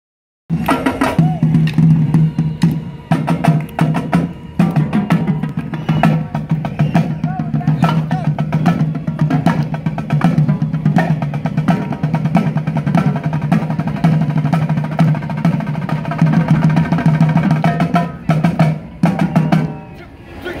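A small marching drum line of snare drums and tenor drums playing a fast, dense cadence, starting about half a second in.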